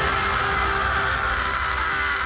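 Anime soundtrack: a character's long, held scream over music, sagging slightly in pitch toward the end.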